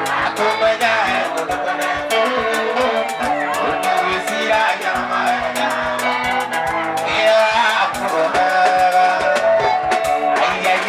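Live mugithi band music: electric guitar over a fast, steady drum beat, with a man singing.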